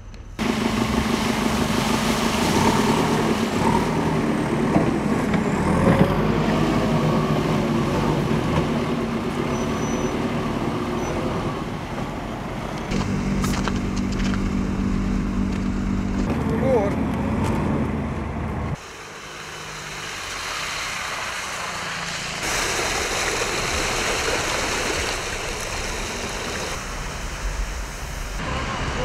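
Heavy truck engines running steadily on a slushy street, with people talking; the middle stretch is a vacuum sewage tanker truck running with a steady hum that cuts off suddenly about 19 seconds in.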